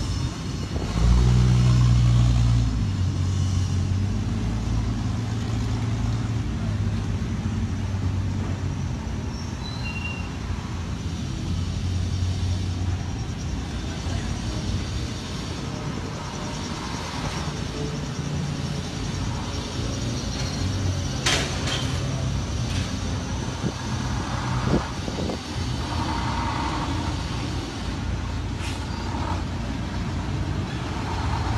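Several cars and a truck drive slowly past one after another with their engines running at low speed. The loudest is a deep engine rumble about a second in, from the Hudson Hornet pulling away. A couple of short, sharp sounds cut in later, and the diesel engine of a Mack truck tractor runs near the end.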